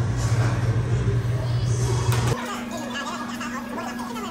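Restaurant dining-room ambience: a steady low hum under indistinct background chatter. A little over halfway through, the low hum cuts off suddenly, leaving a fainter, higher steady hum beneath overlapping voices.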